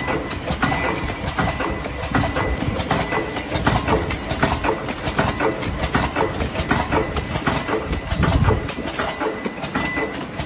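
Honetop HTL-320 vertical form-fill-seal powder packing machine running, with a continuous rapid, irregular clatter of clicks and knocks from its moving parts over a steady mechanical noise. A thin high tone comes and goes.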